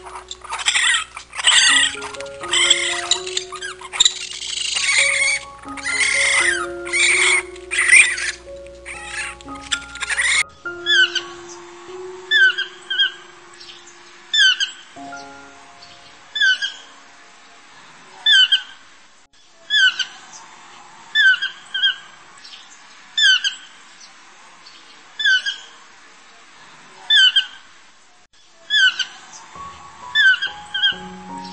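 Raccoon chittering and churring for about the first ten seconds, then a keel-billed toucan calling: short croaking calls repeated roughly once a second, often doubled. Background music with sustained notes runs underneath.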